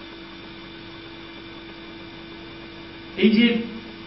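A steady electrical hum, one even tone with a faint hiss beneath it, filling a pause in the talk; a voice says a short word about three seconds in.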